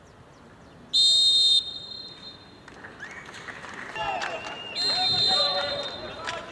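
Referee's whistle blown twice on a football pitch: one loud, steady blast of about half a second about a second in, and a second blast near five seconds in, with players shouting between and after.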